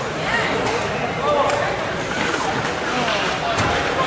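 Overlapping chatter of several spectators' voices in an ice hockey rink, with a few faint sharp clicks.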